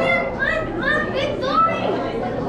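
Children's voices in a crowd: several short, high-pitched rising calls from a child over a steady background murmur of chatter.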